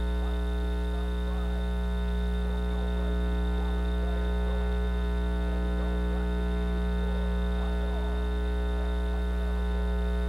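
Steady electrical mains hum with many overtones, loud and unchanging, with faint indistinct voices underneath.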